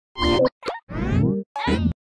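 Animated TV-show intro sting: four short cartoon-style sound effects in quick succession, the third sweeping upward in pitch.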